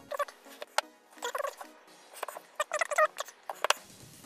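A hand-operated RP Toolz mitre cutter chopping round plastic rod: two clusters of short squeaks and two sharp clicks as the blade is worked.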